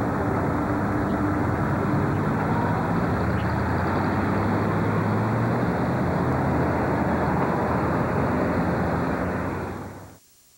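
A car's engine and road noise heard from inside the moving car, with the engine note rising a little midway as it gathers speed. The sound fades and cuts off just before the end as the recording stops.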